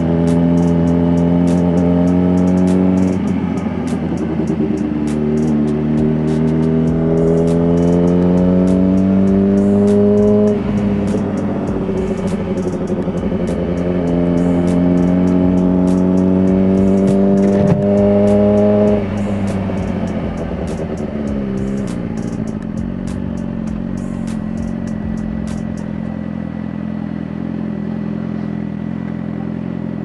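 Suzuki GSX-R sport bike engine pulling up through the gears: its pitch climbs steadily, drops sharply at three upshifts, then settles lower and steadier as the bike slows near the end.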